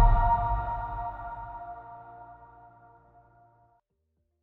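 Ringing tail of the UiPath logo's electronic music sting: a held chord over a deep bass note, fading away steadily until it is gone about three and a half seconds in.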